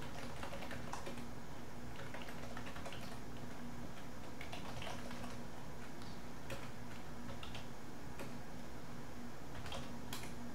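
Computer keyboard typing: short runs of keystrokes with pauses between, over a steady low hum.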